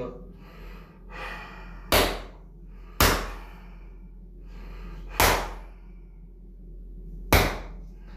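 Hands thrusting down hard on a bare back lying on a massage table during a bone-setting session: four sharp, loud thumps a second or two apart. Breaths in and out can be heard between them.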